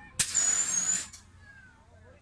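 A drop tower's pneumatic system venting compressed air: a sudden loud hiss with a high whistling note, lasting under a second and cutting off sharply.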